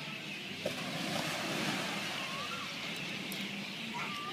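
Outdoor ambience: a steady rushing wash like surf, with faint distant voices and a short rising-and-falling call about two and a half seconds in.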